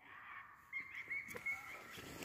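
Faint bird calls: a short run of brief high chirps about a second in.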